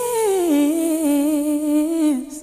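A solo voice holding one long note in a song, stepping down to a lower pitch about half a second in and holding it, with little else behind it.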